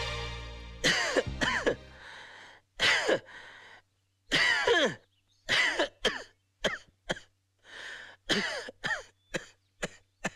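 Background music chord fading out in the first two seconds, then a man's repeated wordless vocal outbursts, short bursts with falling pitch coming in quick runs.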